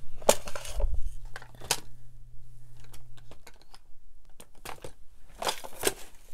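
Small hard objects being picked up, shifted and set down while rummaging for craft supplies: a string of separate clicks and knocks with a dull thump about a second in and a burst of clatter near the end.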